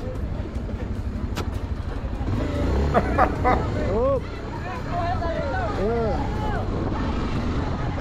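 Motorcycle engine idling with a steady low rumble. Voices call out from about three to six seconds in.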